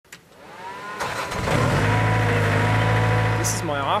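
Aquatic weed harvester's engine coming up to speed over the first second and a half, then running with a steady deep hum.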